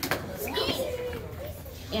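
Children's voices chattering and calling out, with a couple of short sharp clicks right at the start.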